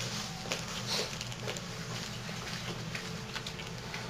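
Low indoor room ambience with a few faint, scattered taps and shuffles.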